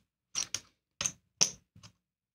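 Casino chips clicking against each other as they are picked up and set down while making change and placing bets: five short, sharp clicks at irregular spacing.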